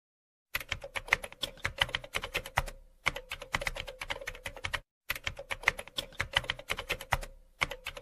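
Computer keyboard typing sound effect: rapid key clicks, several a second, starting about half a second in, with a short break around five seconds in before the typing resumes. A faint steady hum runs under the keystrokes.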